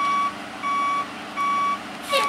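Backup alarm of a large emergency truck reversing: evenly spaced single-pitch beeps, about three in two seconds. A steady low engine drone runs underneath.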